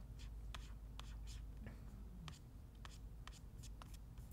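Faint, irregular clicking, about a dozen sharp clicks in four seconds, from hands working a laptop and mouse.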